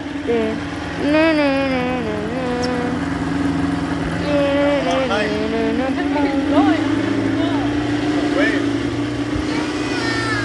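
Motorboat engine running with a steady low hum as the boat moves along, growing a little louder about seven seconds in. People's voices come and go over it.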